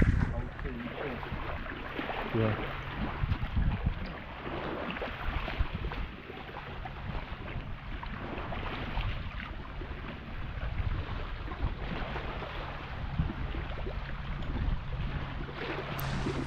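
Wind buffeting the microphone over small waves lapping against a rocky shoreline, with scattered small knocks and a faint low steady hum underneath.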